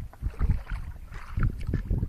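Water splashing and sloshing in irregular bursts as a cairn terrier plays in it.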